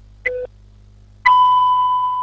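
Countdown-intro sound effect: a short beep in step with the once-a-second beeps before it, then about a second in a louder, long steady beep.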